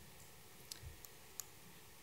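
Near silence with a couple of faint clicks about a second apart, as the presentation slides are changed.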